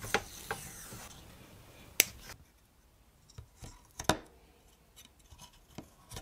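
Quiet hand-handling of blue electrical tape: a strip taken off the roll and pressed onto an Arduino Uno's metal USB socket. Soft rubbing with a few sharp clicks, the loudest about two and four seconds in.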